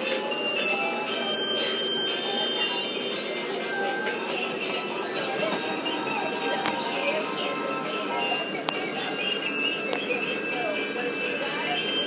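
Several battery-powered musical Christmas decorations playing different songs at the same time: tinny electronic tunes and recorded singing voices overlapping in a steady jumble.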